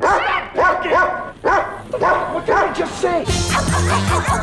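A dog barking in a rapid run of short, sharp barks. About three seconds in, loud music with children singing takes over.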